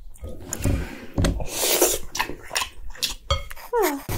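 Wet mixing and scraping of rice with soy-marinated crab innards in a glass bowl, with sharp clicks of a wooden spoon against the glass; a short falling tone near the end.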